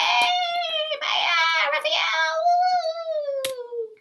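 Children's voices cheering with long drawn-out 'yay' shouts, the last one held and falling in pitch until it cuts off.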